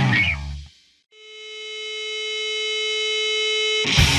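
Hardcore punk track ending with its last chord dying away, a moment of near silence, then a single held note swelling slowly louder for about three seconds before it cuts off as the next track starts at full volume.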